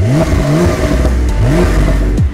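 Porsche 911 Carrera 4S flat-six engine revved twice, its pitch rising sharply each time, once near the start and again a little past the middle.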